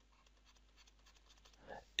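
Faint light scratches and taps of a stylus on a drawing tablet, a few short strokes about a second in, otherwise near silence.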